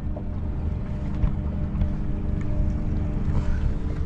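Small skiff's outboard motor idling steadily, a low rumble with a sustained hum, under wind rumble on the microphone.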